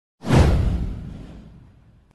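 Intro whoosh sound effect: a single swoosh with a deep low rumble under it, starting suddenly and fading out over about a second and a half.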